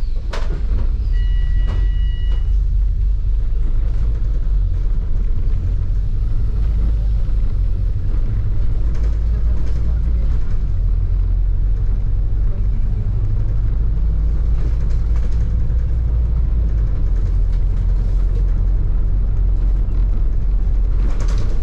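Open-top double-decker bus on the move: a steady, heavy low rumble of engine and road noise, with wind buffeting the microphone on the open upper deck.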